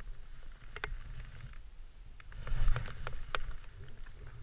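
Skis, ski boots and a pole crunching and scraping in soft snow as a skier shifts and turns on the spot: a few sharp crunches, busiest and loudest about two and a half to three seconds in, over a steady low rumble on the helmet-camera microphone.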